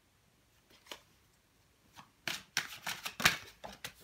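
Tarot cards being shuffled and handled: a single flick about a second in, then a quick run of papery snaps and rustles over the last two seconds, loudest about three seconds in.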